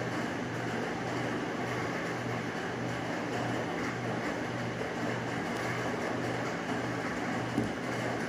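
Steady rain drumming on a tin roof, an even hiss of noise throughout, with a low hum pulsing regularly beneath it.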